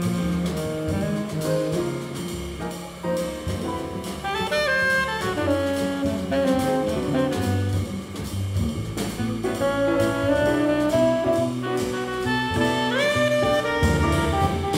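Small jazz group playing live: a tenor saxophone leads a melodic line over piano, double bass and drums, sliding up into a high note near the end.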